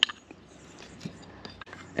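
Faint light clicks of aluminium water pump housings being handled and set down on a towel-covered table, over quiet background hum.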